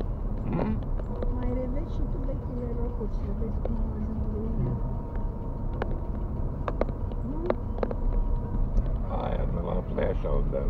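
Car interior while driving: a steady low engine and road rumble, with a few short sharp clicks or knocks in the second half.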